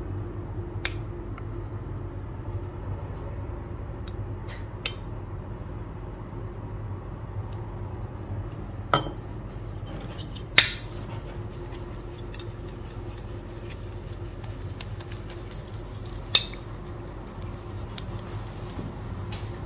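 Stainless steel shaving cup, bowl and brush knocking and clinking during shaving-foam preparation: a few sharp metallic clinks, the loudest about ten and a half seconds in and another near the end, over a steady low hum.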